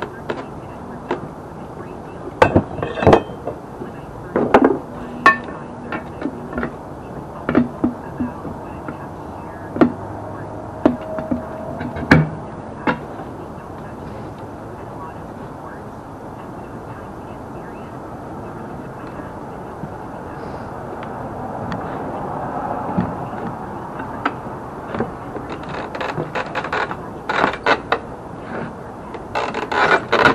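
Irregular metal clanks and knocks from a manual tire changer as a steel-rimmed wheel is set on its post and the lever is worked. The knocks come in clusters, many in the first dozen seconds and again near the end.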